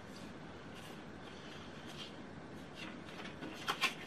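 Faint rustling of paper and card stock being handled, with a few brief crisp paper crackles near the end as the folded card is opened.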